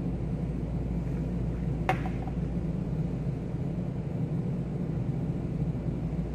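Steady low room hum with a brief sharp click about two seconds in.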